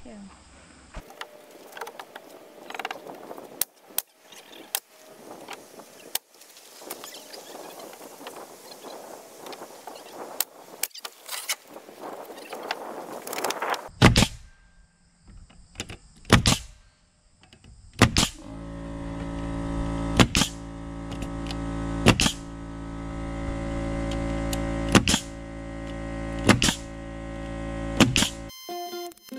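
Pneumatic coil nailer driving nails into wooden board siding: sharp single shots a second or two apart, most of them in the second half. Background music fades in about two-thirds of the way through.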